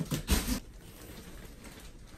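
A short thump in the first half-second, then faint crinkling of plastic wrap as a rolled, vacuum-packed mattress is handled.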